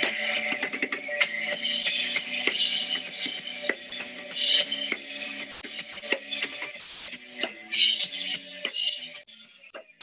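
Live rock band music from a band-practice video, played back over a Zoom call's screen share, with steady chords and repeated drum strikes. The song wraps up and the music drops off about nine seconds in.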